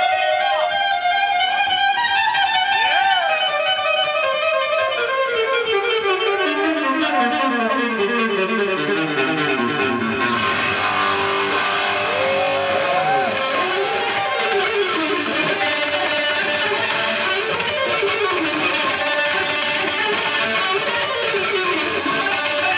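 Live electric guitar solo: a long run of notes stepping down in pitch over the first eight seconds or so, then bent notes rising and falling. The sound grows fuller and brighter about ten seconds in.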